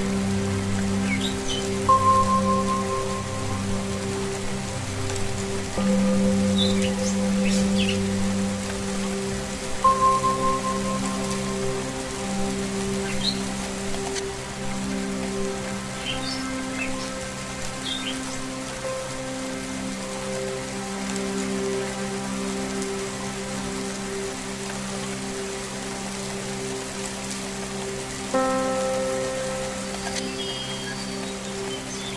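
Steady rain falling under soft held ambient tones of singing bowls and strings, with new notes swelling in every few seconds. A few short, high bird chirps come and go in the first half.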